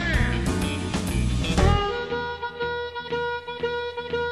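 Live electric blues band playing. About two seconds in, the band thins out and the bass drops away, leaving a sparser passage of repeated held notes.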